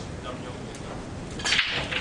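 English pool break-off: the cue ball is driven into the racked reds and yellows, a loud crack of balls colliding about one and a half seconds in, followed by a brief clatter as the pack scatters.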